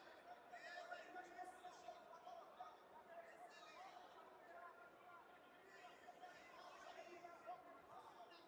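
Faint hubbub of many voices talking at once in a large arena, over a steady thin hum.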